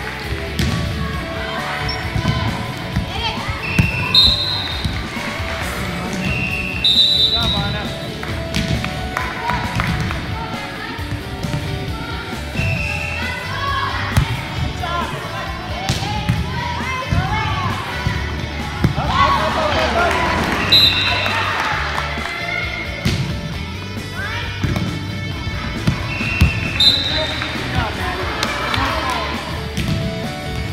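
Indoor volleyball rally on a hardwood gym floor: the ball is struck in repeated dull thumps, and short high squeaks come from sneakers, with voices echoing in the gym.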